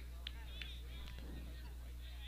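Faint distant voices and a few short clicks in the first second, over a steady low hum.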